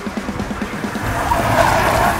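A 2018 Suzuki Swift taken hard through a bend, its tyres squealing and growing louder from about a second in.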